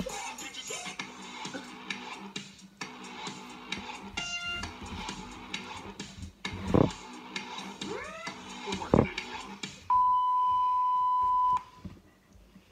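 Funny video clips playing through a laptop's speakers: music and voices, with two sharp thumps about seven and nine seconds in. Near the end a loud, steady high beep comes in for about a second and a half, then cuts off.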